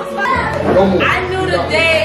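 Several voices talking in a room, unclear and overlapping, with a woman's voice among them; music that was playing stops right at the start.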